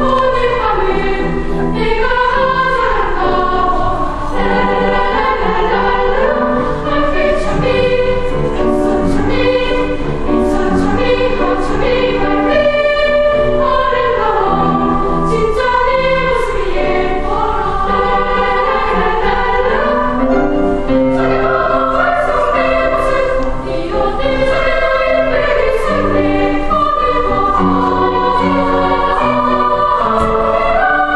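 Children's choir singing.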